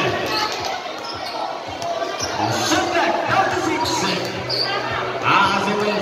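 A basketball being dribbled on a hard court, bouncing under a constant hubbub of spectators talking and calling out.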